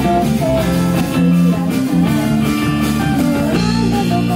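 A live rock band playing: electric guitar over bass and drums, loud and continuous.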